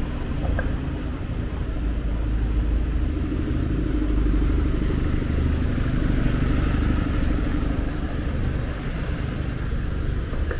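Motor vehicle engine running close by in the street: a steady low rumble with a hum that grows louder in the middle and eases off near the end.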